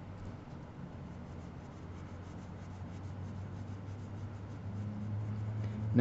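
Graphite pencil shading on paper: many quick, short, scratchy curving strokes laying down dark tone.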